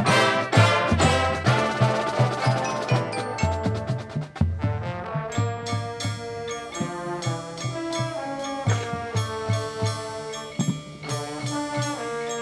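High school marching band playing: brass over drums and mallet percussion such as marimba from the front ensemble. Loud and full at first, it thins to quieter held notes over a steady pulse after about four seconds.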